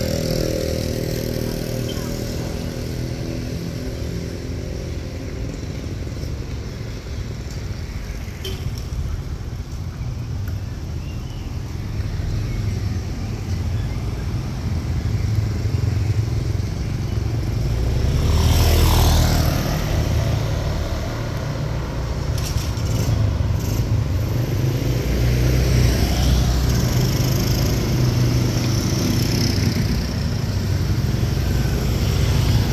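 Street traffic with motorcycle engines under a steady low rumble. One vehicle passes close about 19 s in, rising and then falling away, and another goes by later.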